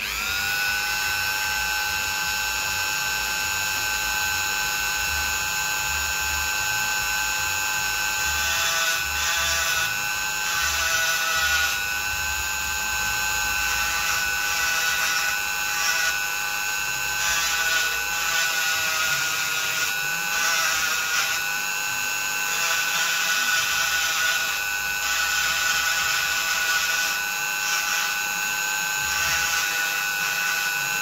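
Flexible-shaft rotary tool switched on, spinning up to a steady high whine. From about eight seconds in the bit grinds into a coconut shell, adding a scraping noise and making the pitch dip slightly under load.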